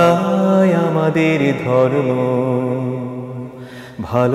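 A male singer holds long, ornamented notes of a Bangla Islamic song (gojol) over a steady low drone, in a chant-like vocal style, with no words clearly sung.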